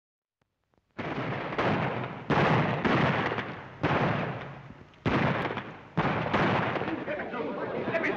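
Gunfire in a western shootout on an old film soundtrack: about eight shots at irregular spacing, each a sudden loud blast that dies away over about half a second.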